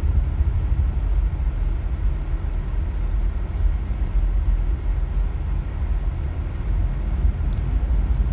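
Steady low rumble of a car driving slowly on a snow-packed road, heard from inside the cabin: engine and tyre noise with no sharp events.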